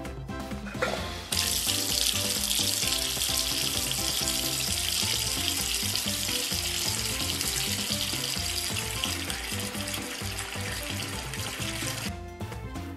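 Water running from a kitchen tap: a steady hiss that starts suddenly about a second in and keeps on, over light background music.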